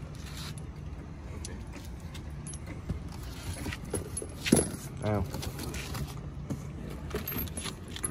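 Cardboard box rustling and scraping as new control arms are shifted about inside it, with scattered light clicks and knocks of the parts; the loudest knock comes about four and a half seconds in. A steady low hum runs underneath.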